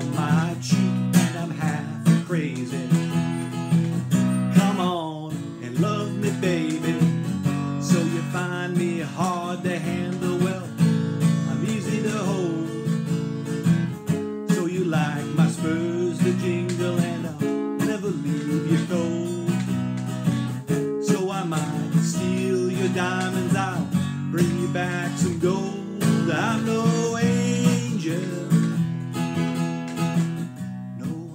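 Acoustic guitar strummed steadily under a man's singing voice, in a slow blues-rock song.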